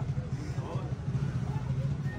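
A steady low hum under faint background voices: the ambient sound of a busy shop.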